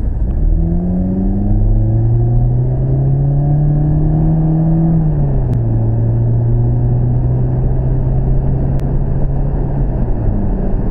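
Car engine pulling away and accelerating, its pitch rising steadily, then dropping about five seconds in as it shifts up a gear and holding steady at cruising speed, over a constant road rumble.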